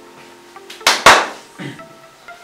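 Two sharp slaps of a hand in quick succession, the second louder, while flour is being dusted over a wooden worktop.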